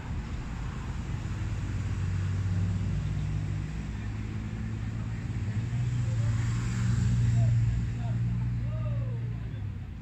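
A motor vehicle's engine running close by, a steady low hum that swells to its loudest about seven seconds in and fades near the end.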